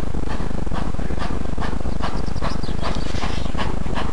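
Exhaust beats of an ex-GWR steam tank locomotive working hard in the distance: short chuffs at about two to three a second, coming closer together after about two seconds, over a steady low rumble.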